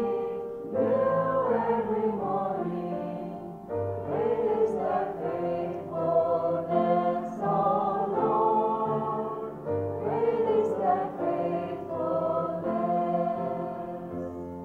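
A small group of girls singing a worship song together into microphones, in sung phrases of a few seconds each, with steady low notes held underneath the voices.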